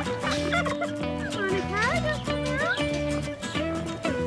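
Domestic turkeys gobbling and calling, with several short rising calls through the middle, over background music with steady held chords.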